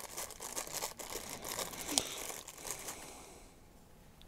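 Thin clear plastic wrapping crinkling as it is handled and peeled off a small plastic model railway buffer stop, with one sharper snap about two seconds in. The crinkling fades away near the end.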